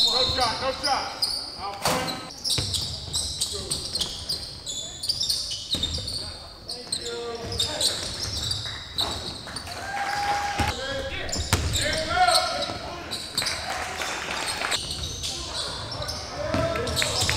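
Basketball game on a hardwood gym floor: the ball bouncing, sneakers squeaking in short high chirps, and players calling out, all echoing in the hall.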